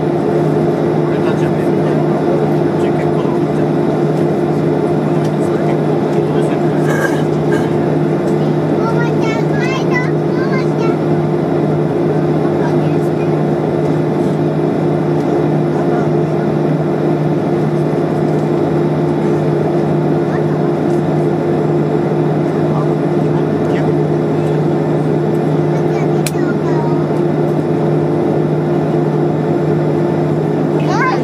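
Airliner cabin noise from the jet engines running steadily at ground idle, a constant loud rush with two steady low hums and no change in power.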